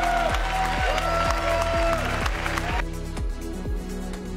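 Audience applause over background music with a steady drum beat; the applause stops about three seconds in, leaving the music alone.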